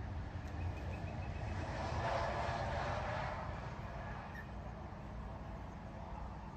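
A vehicle passing by, its noise swelling to a peak about two seconds in and fading again, over a steady low rumble.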